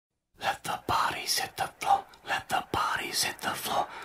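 A voice whispering in short breathy phrases, with a short low thump about every two seconds.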